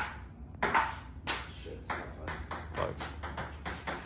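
Table tennis rally: the ball clicking off the paddles and the table in a quick, uneven series of sharp ticks.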